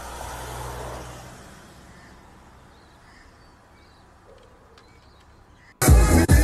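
Outdoor street sound of a car going past and fading away, with a few faint bird calls. Loud pop music cuts in suddenly just before the end.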